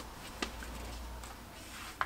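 Faint handling of a sheet of paper being folded flat on a table, with one sharp click about half a second in.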